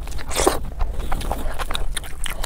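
Close-miked eating sounds of a mouthful of curry-soaked food: wet chewing, smacking and lip clicks, with one louder wet burst about half a second in.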